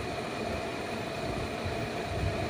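Steady background rumble and hum, with no sudden events.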